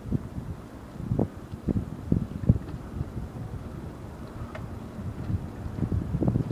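Wind buffeting the microphone: a low rumble with irregular gusts.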